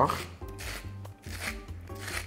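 Clear hand-twisted spice mill grinding over a bowl, in about four short grating bursts as it is turned.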